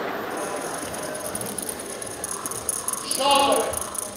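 Tambourine jingles shaken in a rapid, steady rhythm, with a voice calling out about three seconds in.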